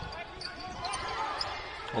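Fairly quiet live basketball game sound: a ball bouncing on a hardwood court, with faint voices in the background.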